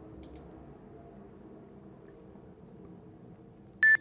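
A few faint clicks over a low computer-room hum, then near the end one short, loud, high-pitched beep: the FlySight simulated audio tone as playback of the processed track begins.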